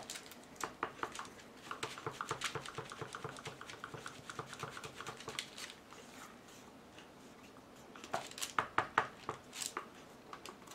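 Stir stick tapping and scraping around the inside of a clear plastic cup while stirring thick acrylic pouring paint, a quick run of light clicks at about six a second. There are louder knocks near the end.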